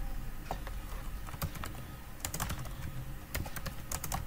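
Typing on a computer keyboard: scattered keystrokes, sparse at first and coming in quick runs in the second half.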